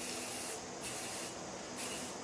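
Aerosol spray can hissing in short bursts, about three in the two seconds.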